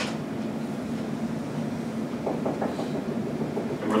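Steady low hum of room ventilation, with a few faint strokes of a marker on a whiteboard a little past the middle.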